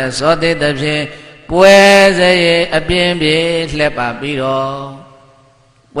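A Buddhist monk's voice chanting in a drawn-out, held tone: a short phrase, then a louder, longer one from about a second and a half in, trailing off to quiet near the end.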